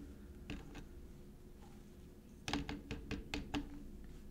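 Light, sharp taps or clicks: a single one about half a second in, then a quick run of about six over roughly a second, a little past halfway.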